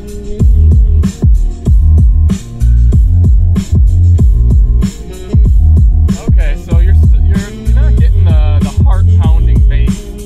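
Bass-heavy electronic music played through the 2022 Mazda 3's 12-speaker Bose sound system with the bass turned all the way up, heard inside the car's cabin. Deep bass notes pulse on the beat, with short dips in loudness between phrases.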